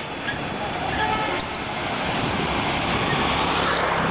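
Street traffic noise heard from a moving bicycle, with wind rumbling on the microphone. A hiss swells over the last two seconds.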